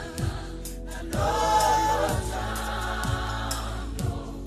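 South African gospel song: voices singing in choir over a band, with a kick drum on roughly every beat, about once a second. The voices drop out briefly near the start and come back strongly about a second in.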